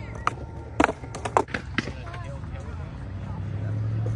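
Skateboard clacking against a concrete ledge and the ground: a run of sharp knocks in the first two seconds as the board lands and hits the edge. A low steady hum builds near the end.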